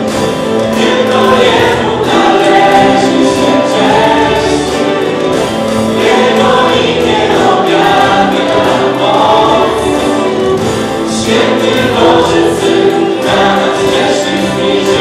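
A Christian worship song sung live by a small group of male and female voices into microphones, with instrumental backing.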